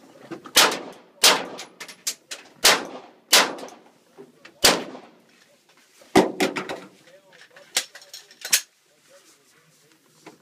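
Pistol shots fired from inside a van, about nine of them, mostly in pairs less than a second apart with short pauses between.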